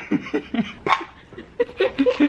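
People laughing in a run of short, repeated bursts.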